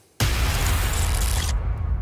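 A bang sound effect played back in an audio editor: a sudden loud boom about a fifth of a second in, with a hissing crash on top that cuts off about a second and a half in while a deep rumble carries on.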